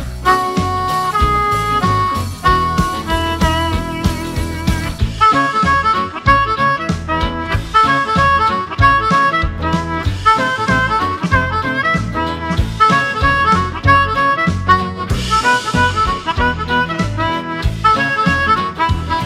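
Amplified Lucky 13 harmonica in PowerChromatic tuning, cupped close around a handheld harmonica microphone, playing a swing-jazz blues melody in quick runs of notes over a swing backing track with bass and drums.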